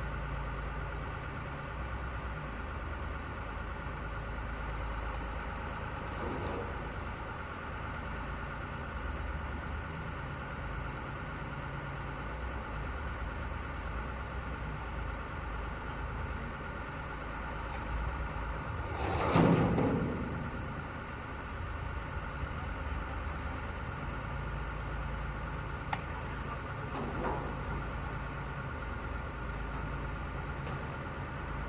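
Heavy truck diesel engines running steadily at idle during a winched recovery, with one louder rushing swell lasting about two seconds about two-thirds of the way through.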